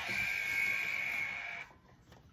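Royal Rumble entrant buzzer: one steady buzzing tone, just under two seconds long, that cuts off suddenly.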